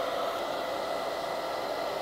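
Handheld hair dryer running steadily on its low, hot setting: a steady rush of air with a faint whine.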